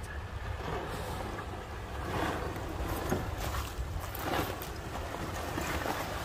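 Jeep Gladiator pickup wading through a shallow creek crossing, water sloshing and splashing around its tyres over a steady low rumble, the splashing swelling a few times.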